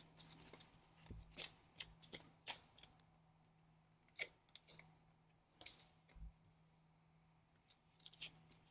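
A tarot deck being hand-shuffled: faint, short card clicks and flicks, about a dozen of them scattered irregularly over the first six seconds.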